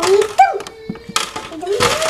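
Thin black tortilla-style chips sliding out of a tipped canister and clattering onto a plastic tray: a dense, crackly rattle starting a little over a second in. A short voice sound comes near the start.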